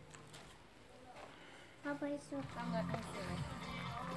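Faint room tone for the first two seconds, then an indistinct voice starts about halfway through.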